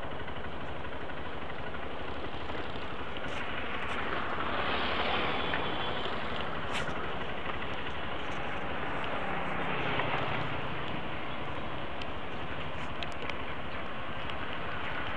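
Motorcycle engine running steadily while riding at low speed, under a continuous rush of wind and road noise, which swells up twice, about five and ten seconds in.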